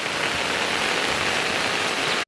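Steady rushing water noise of a flood: rain and fast-running floodwater, an even hiss with no let-up.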